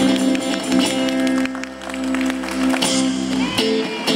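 A live band of acoustic guitar, electric bass, saxophone and congas playing an instrumental passage with long held notes. The bass drops out about three and a half seconds in.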